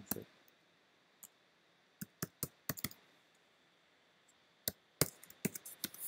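Typing on a computer keyboard: a short run of keystrokes about two seconds in, then a quicker burst of keystrokes near the end.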